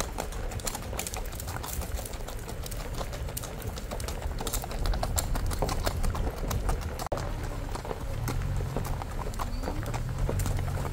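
Hoofbeats of a ridden horse on a dirt road: a quick, continuous clip-clop of footfalls over a steady low rumble.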